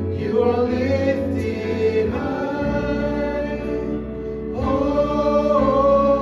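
A live worship band with several voices singing together in long held notes over the band's steady bass and instruments. A new sustained phrase begins about two-thirds of the way through.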